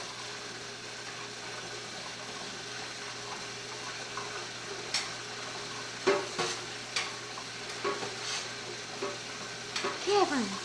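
Kitchen faucet running steadily into a stainless steel sink, a constant hiss. From about five seconds in, a few short splashing and knocking sounds as the baby plays in the water.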